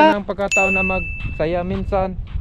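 A single bright ding starts suddenly about half a second in and rings on as one steady tone for about a second and a half, over men talking.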